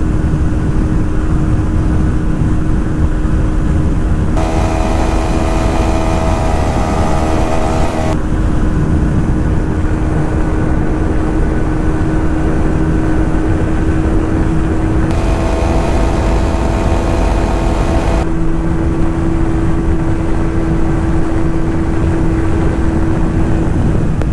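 TVS Apache 160 2V single-cylinder engine held steady near top speed at about 126 km/h, a steady high engine note with wind rush. Twice, for about three or four seconds each, from about four seconds in and again about fifteen seconds in, a second, higher-pitched note joins it.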